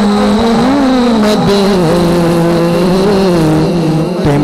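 A man singing a naat into a handheld microphone, holding long drawn-out notes that slide slowly and settle lower about halfway through, with no words in between.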